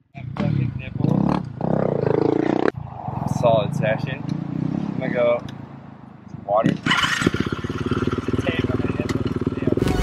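Laughter and voices, then about seven seconds in a dirt bike engine catches and idles steadily.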